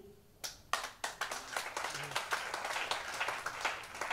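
A congregation clapping faintly and unevenly, starting about a second in after a brief hush.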